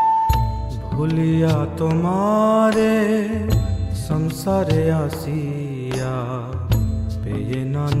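Bengali Vaishnava devotional song (bhajan): a voice sings a slow, gliding melody over instrumental accompaniment with a low sustained bass and sharp percussion strikes.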